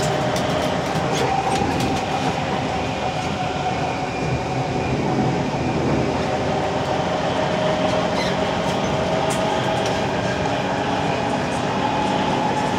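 Singapore MRT train running, heard from inside the carriage: a steady rumble with a held whining tone and a few faint clicks.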